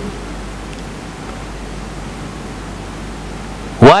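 Steady even hiss with a low hum underneath: background room and recording noise. A man's voice starts right at the very end.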